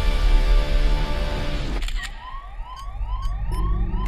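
Movie-trailer soundtrack: dense music that cuts off about two seconds in. It gives way to a siren-like alarm of short rising tones repeating two or three times a second.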